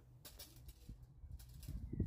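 Faint outdoor background with a soft, low bird call in the second half.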